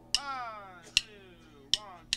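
Drumsticks clicked together to count the band in: three sharp clicks about 0.8 s apart, each trailing a short falling ring.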